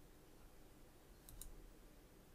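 Near silence, with a faint computer mouse click, two quick ticks close together, about halfway in.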